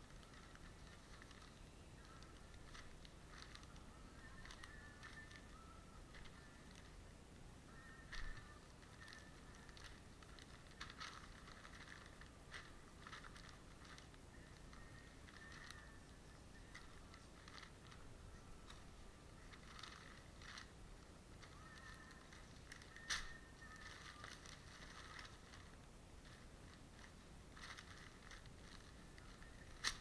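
Faint crinkling and rustling of newspaper rubbed hard over a skinned muskrat pelt to strip off the fat, with a couple of sharper clicks about eight seconds in and again past twenty seconds.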